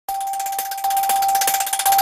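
Electronic intro sting of a news channel's logo: one steady held tone with a rapid, even ticking shimmer above it.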